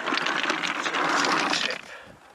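A bucketful of stones tipped into a dug pit, clattering and rattling onto one another in a dense run of knocks that dies away near the end.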